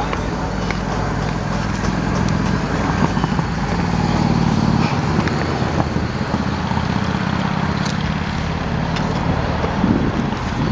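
Steady low hum and rush of road traffic, a little louder around the middle.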